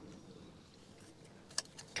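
Faint handling sounds of a plastic A-pillar gauge pod being held loosely in place against the dash trim, with a couple of light clicks near the end.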